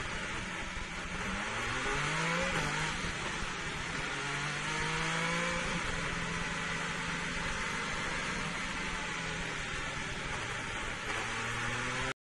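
Ferrari SF71H Formula 1 car's 1.6-litre turbocharged V6 heard from the onboard camera: the engine note dips at first, climbs about two seconds in, then holds steady for several seconds before easing slightly near the end, over a steady rush of wind and tyre noise.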